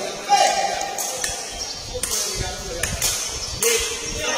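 Sepak takraw ball kicked back and forth in a rally: several sharp smacks of foot on the woven ball, roughly a second apart, with voices of onlookers around them.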